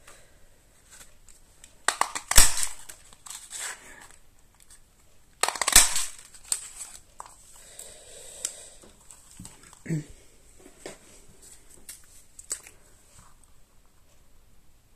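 A Stampin' Up medium daisy craft punch cutting through purple cardstock twice: a sharp crunching snap a little over two seconds in and another just before six seconds. After that come lighter clicks and rustles of the card and the punch being handled.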